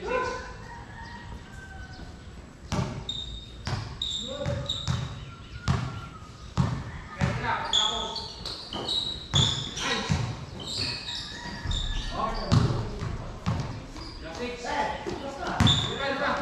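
A basketball bouncing and being dribbled on a hard court, irregular sharp thuds, mixed with short high squeaks of sneakers and players' shouts.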